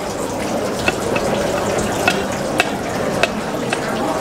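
Knife and fork cutting a pork steak on a plate, with scattered light clicks of metal on the plate, over a steady rushing background noise.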